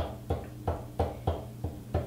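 A pen tip tapping repeatedly on a paper cut-out lying on a tabletop, about three sharp taps a second, over a low steady hum.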